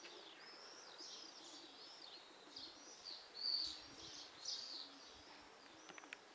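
Small birds chirping, a steady run of short high chirps overlapping one another, with the loudest call a little past the middle.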